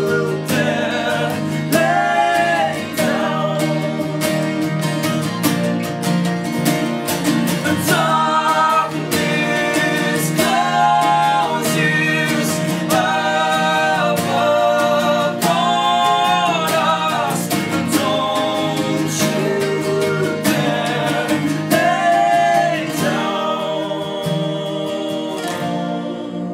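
Strummed acoustic guitars with several voices singing together in harmony, sustained notes that rise and fall in a folk song.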